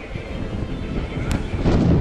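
Wind and handling noise on a handheld camera's microphone: irregular low rumbling and knocks, with a sharp click about two-thirds of the way through and louder rumble near the end.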